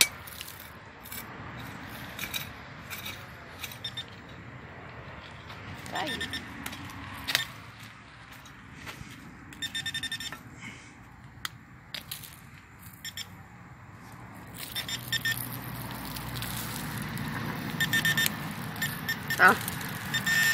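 A hand hoe chopping and scraping into stony soil, with many short knocks and crunches. Between them a handheld metal-detector pinpointer beeps in short high electronic bursts, which come more often near the end as it closes in on a buried metal target.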